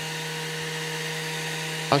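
Steady electrical hum and whine of a running vintage airborne radio set's rotary converter (Umformer), holding one even pitch throughout.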